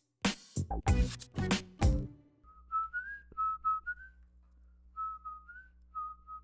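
A woman whistling a short tune into a close microphone: a string of short notes at one high pitch, some sliding up, in two phrases with a brief gap between them. Before it, about two seconds of voice-like sound.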